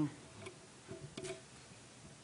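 A few faint, light clicks and small knocks in a quiet room.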